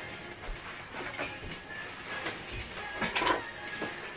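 Inkjet printer mechanism giving a few short clunks and rattles, the loudest about three seconds in, over faint background music.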